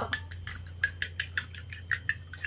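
A fork beating a raw egg in a small glass bowl, the tines clicking against the glass in a quick, even rhythm of about six strokes a second.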